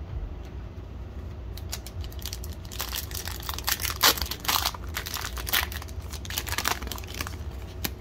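Foil wrapper of a football trading-card pack crinkling and tearing as it is opened by hand: a run of sharp crackles that thickens from about three seconds in.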